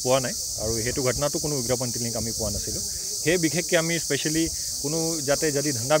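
A steady, high-pitched insect chorus, crickets or cicadas, drones on unbroken under a man speaking.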